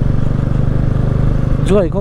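TVS Ronin single-cylinder motorcycle engine running steadily while cruising at about 45 km/h, with road and wind noise; a voice begins near the end.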